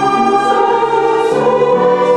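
Women's choir singing held notes, accompanied by two violins and piano.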